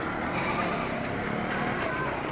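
Sheep hooves making a light, irregular clatter as the animals walk on a paved street, with people's voices in the background.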